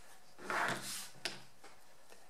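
Small paint tubes handled and set down on a plastic cutting mat: a soft rustle about half a second in, then a single light click.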